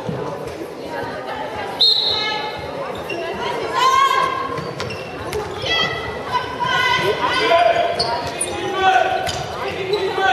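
A handball bouncing on a sports-hall floor during play, mixed with players' high-pitched shouts and calls ringing through the hall.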